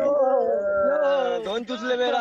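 Several men's voices overlapping in long, drawn-out whoops and cheers, their pitch sliding up and down, with a short break about one and a half seconds in.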